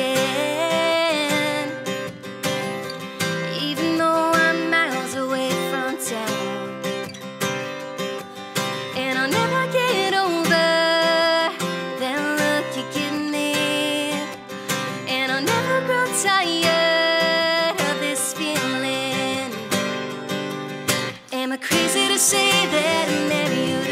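Country song played live on strummed acoustic guitar, with a woman singing the melody over it.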